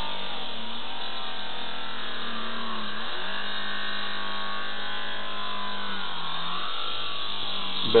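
A magnet spun by a pulse-driven Starship Satellite Coil gives a steady electric humming buzz. Its pitch drops slightly about three seconds in and dips again near the end as the rotor speed shifts.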